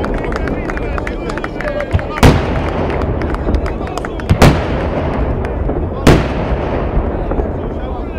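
Daytime fireworks display: aerial shells bursting with loud bangs about two, four and six seconds in, the middle one a quick double, over continuous rapid crackling of smaller charges.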